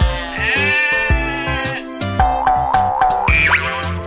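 Cartoon sheep bleats over a children's song backing with a steady beat: one long wavering "baa", then four short bleats in a row and a quick rising slide near the end.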